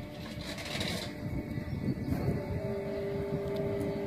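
Wind buffeting the microphone with an irregular low rumble, and a steady hum setting in about two and a half seconds in.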